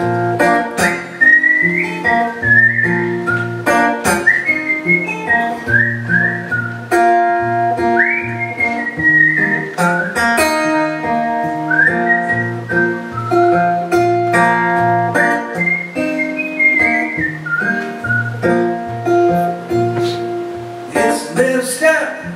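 A man whistling a melody over a strummed acoustic guitar: a whistled instrumental break between verses of a folk song.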